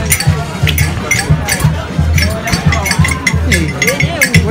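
Music with a steady, quick drumbeat and a pulsing bass, with voices over it.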